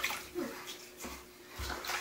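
Bathwater splashing and sloshing in a bathtub as hands move through the water, in short light splashes, with a couple of dull low bumps in the second half.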